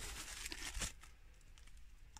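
Insulation materials being handled, a faint crinkling and rustling with small crackles, busiest in the first second and thinning out after.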